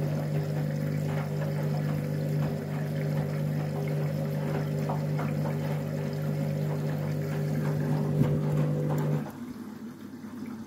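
Candy EcoMix front-loading washing machine tumbling a wash load, its motor humming steadily over water sloshing in the drum. About nine seconds in, the hum cuts off suddenly as the drum comes to rest, and quieter water sounds carry on.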